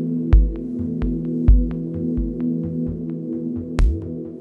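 Ambient music: a steady low chord drone under deep bass thumps and sharp clicks in an uneven rhythm, the loudest thumps about a third of a second in, at about one and a half seconds and near the end.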